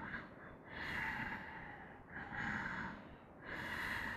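A man breathing audibly while holding a strenuous back-bending yoga pose (floor bow): three long, hissing breaths, each about a second, with short pauses between.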